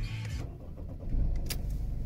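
Mercedes C220 CDI's 2.2-litre four-cylinder diesel starting at the first turn of the key, heard from inside the cabin: it catches about a second in and settles into an even idle.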